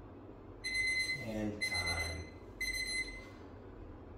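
Smartphone timer alarm beeping three times, about one beep a second, signalling the end of a timed stretch interval. A brief vocal sound from the man comes with the second beep.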